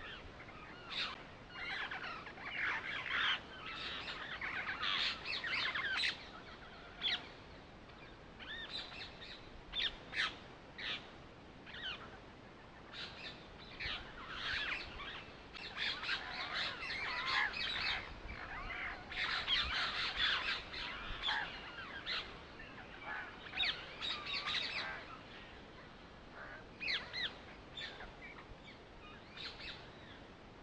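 Birds chirping and calling, many short overlapping chirps coming in busy stretches with quieter gaps between.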